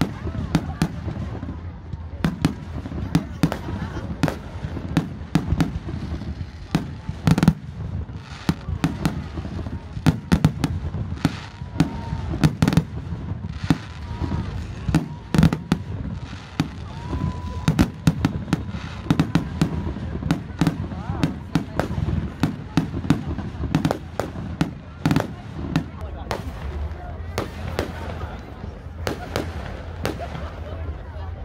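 Aerial fireworks display: many sharp bangs from shells bursting overhead, in quick, irregular succession.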